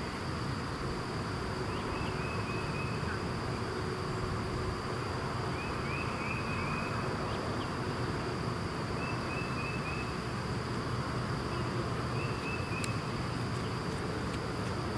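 Insects buzzing steadily in a high, unbroken drone, with short chirping trills every three to four seconds over a steady low background noise.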